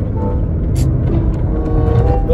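Steady low rumble of road and engine noise inside a car's cabin at speed, with a brief high hiss near the middle.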